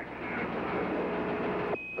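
Hiss of an open air-to-ground radio channel, then a short high beep near the end: a Quindar tone marking the start of a CapCom transmission from Houston.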